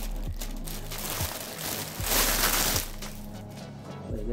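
Background music with the rustle of a fabric satchel being handled and opened, loudest in a burst about two seconds in.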